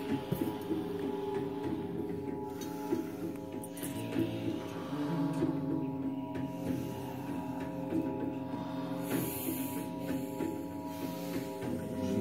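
Quiet music with steady held tones, a low hum underneath, and a few soft knocks and rustles.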